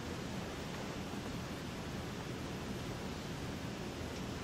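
Steady room tone: an even hiss with a low hum underneath and no distinct sounds.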